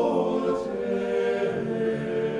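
Orthodox church choir singing an unaccompanied chant, several voices holding long, slowly changing chords.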